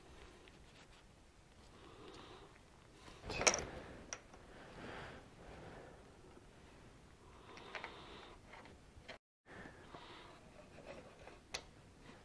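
Faint handling sounds of small metal parts and nitrile gloves as an O-ring is picked off a diesel fuel injection valve, with one sharper click about three and a half seconds in.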